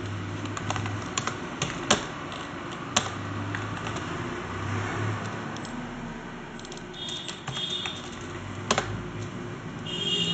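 Computer keyboard being typed on in short irregular runs of keystrokes, a few clacks louder than the rest, over a steady low hum.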